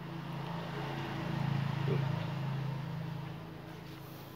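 A motor vehicle passing nearby: a low engine hum that swells to its loudest about two seconds in, then fades away.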